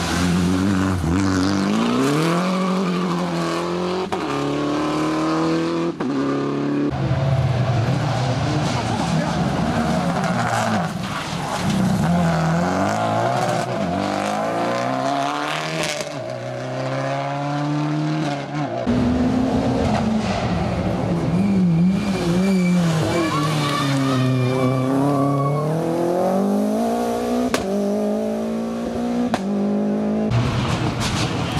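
Rally cars taking a hairpin on a special stage one after another. Each engine revs hard, drops away under braking and climbs again through the gears as the car accelerates out, with some tyre squeal.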